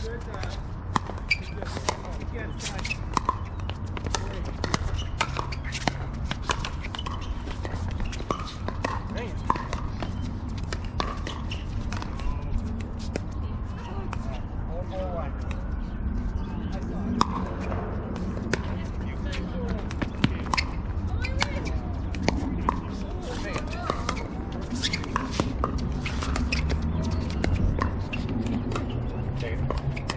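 Pickleball paddles hitting the plastic ball: short, sharp pops at irregular intervals, often one or two a second, with distant voices underneath.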